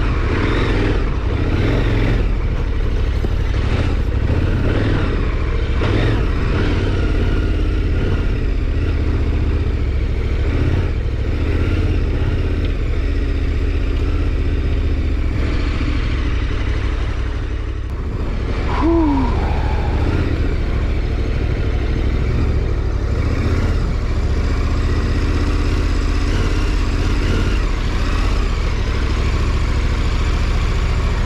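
KTM 1290 Super Adventure R's V-twin engine running steadily at low revs while the bike is ridden off-road. The engine eases off briefly a little past halfway and picks up again. A short falling tone sounds about nineteen seconds in.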